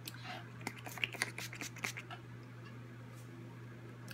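A run of faint, short clicks and taps from a bottle of L'Oréal Infallible setting spray being handled, mostly in the first two seconds.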